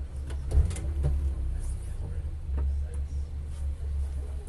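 MINI GP2 race car's engine idling, a steady low hum heard from inside the cabin. A few sharp clicks and knocks come in the first second, with one more about two and a half seconds in.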